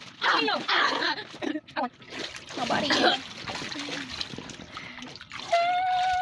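Boys laughing and yelling while splashing and wrestling in a pool of water and Orbeez, ending in one long held cry about five and a half seconds in.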